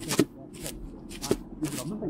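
Footsteps in snow at a steady walking pace, about two steps a second.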